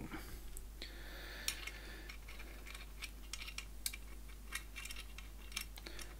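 Light scattered clicks and taps of steel sword fittings being handled as a sidesword's pommel and hilt are fitted back onto its tang, with a short faint rasp about a second in.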